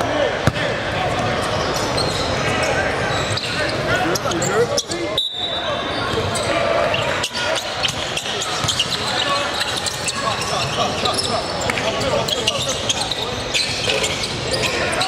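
A basketball dribbling and bouncing on a hardwood gym floor during play, with a background of many voices from players and spectators, echoing in a large hall. The sound drops out briefly about five seconds in.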